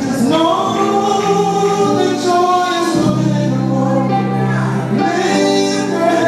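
Male gospel vocal group singing live with a band, voices holding long notes and sliding between pitches over steady electric bass.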